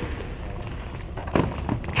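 Steady low rumble of a large indoor arena's room tone, with two short sharp knocks about a second and a half in.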